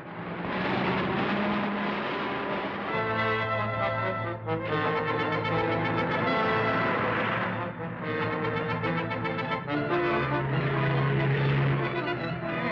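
Orchestral film music with brass playing held chords that change every second or two, after a swelling opening of about three seconds.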